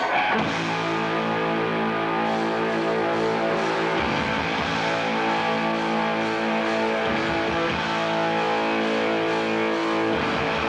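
Live rock band playing, led by electric guitar holding long sustained chords that change about four and seven seconds in.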